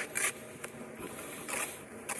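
Steel trowel scraping mortar against concrete block in two short strokes, one at the very start and a longer one about one and a half seconds in.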